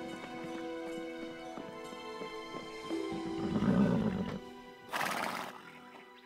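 A horse neighs loudly about three and a half seconds in, followed about a second later by a short, hissing burst of noise, over a film score of sustained notes.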